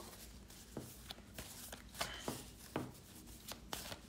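Deck of MAC picture cards being handled and shuffled by hand: a string of faint, irregular card clicks and rustles.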